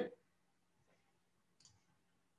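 Near silence with a faint steady hum and a faint click or two, the clearest about a second and a half in, consistent with a computer mouse click.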